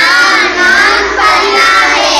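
A group of children's voices chanting together, loud and high-pitched.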